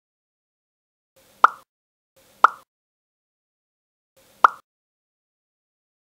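A short cartoon-style pop sound effect, repeated three times with identical copies: two about a second apart, then a third two seconds later, with dead silence between them.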